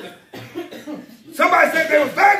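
A man's voice preaching loudly and animatedly, the words not made out; it grows much louder about halfway in.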